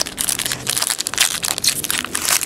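Plastic wrapper of a 2010 Panini Certified football card pack crinkling as hands open it and pull out the cards.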